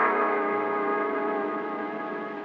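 Orchestral bridge music between scenes of a radio drama: the held final chord of a brass-led cue, sustained and slowly fading away.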